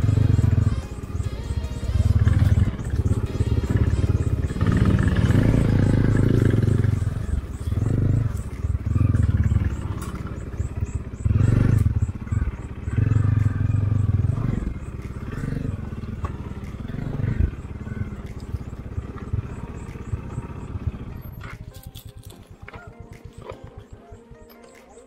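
Single-cylinder engine of a Bajaj Dominar 400 motorcycle running at low speed, with uneven surges of throttle over rough grass. Near the end it settles to a quieter, even idle as the bike comes to a stop. Background music plays over it.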